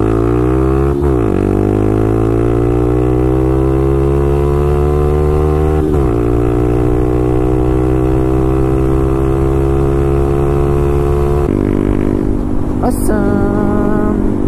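Honda Grom 125's single-cylinder engine, breathing through an aftermarket Tiger full exhaust, accelerating hard under full throttle. The note climbs steadily through the gears, with brief dips about a second in and again about six seconds in as it shifts up, and it changes abruptly near the end.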